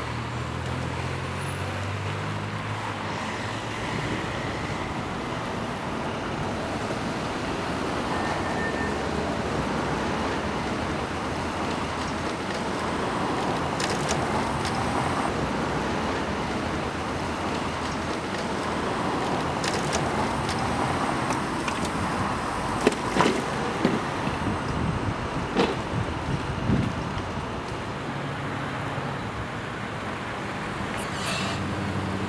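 Steady city street traffic noise, cars passing, with a truck engine running low for the first few seconds. A few sharp knocks sound near the end.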